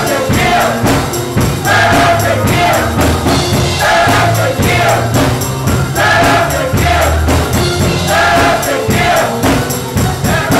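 Gospel choir singing in phrases over a band, with a steady beat and a bass line underneath.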